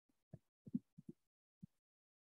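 Faint, muffled computer keyboard keystrokes: about half a dozen short dull taps at uneven spacing, with dead silence between them.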